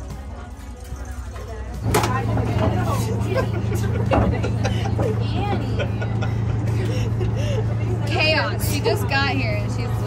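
A boat's engine running at a steady low drone, which comes in abruptly about two seconds in, with people chatting over it.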